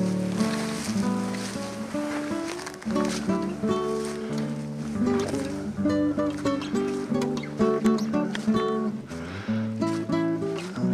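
Background music: an acoustic guitar playing chords and picked notes.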